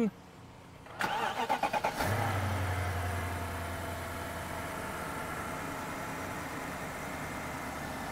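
2004 BMW 745i's 4.4-litre V8 started with the push button: the starter cranks for about a second, the engine catches about two seconds in, and it settles into a steady idle.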